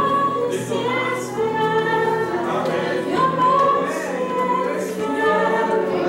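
Mixed youth choir singing sustained, slowly moving phrases, with a woman leading on a microphone.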